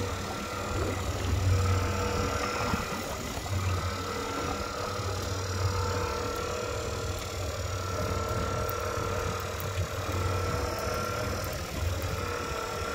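Motors running on a sport-fishing boat: a steady low throb with a thin, even whine over it that breaks off briefly a few seconds in.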